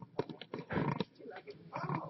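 A domestic cat making a few short, uneasy vocal sounds; the cat is worried while being held.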